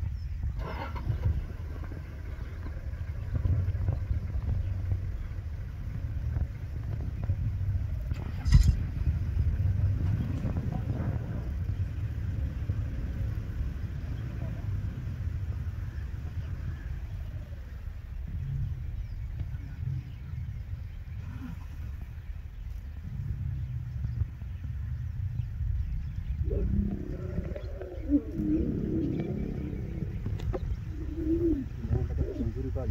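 A steady low background rumble, with a single sharp click about eight and a half seconds in and faint voices near the end.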